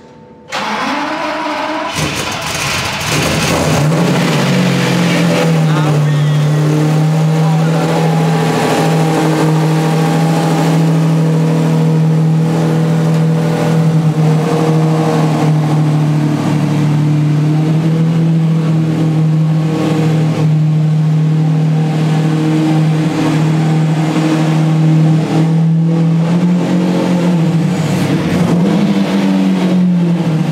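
Lamborghini Diablo's V12 engine starting about half a second in, the revs climbing briefly and then settling into a steady idle, dipping and rising slightly near the end, in an underground car park.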